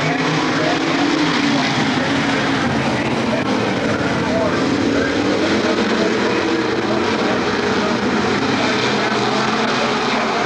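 Pack of dirt modified race cars running on the track, their engines droning together with the pitch wavering up and down as they circulate.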